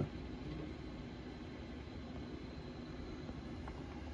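Steady low background hum with a light hiss and no distinct events, the kind of constant room noise a fan or air conditioner makes.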